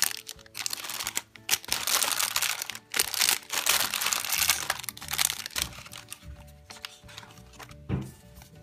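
Plastic candy packet wrappers of Lemonhead candies crinkling as they are handled, loudest in the first five seconds and then fading to light rustles, over soft background music.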